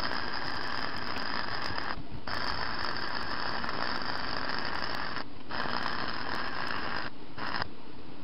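Electric arc welding on steel: the arc crackles in three long runs of two to three seconds each, separated by short breaks, then a brief last burst and it stops shortly before the end.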